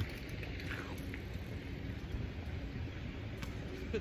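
Outdoor background: a steady low rumble, with a faint distant voice a little under a second in.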